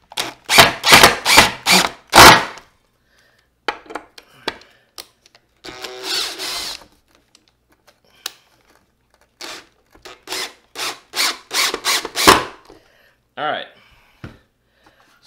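Cordless drill driving wood screws into a wooden board in short trigger bursts. One run of bursts comes in the first couple of seconds, and another runs from about nine to twelve seconds in.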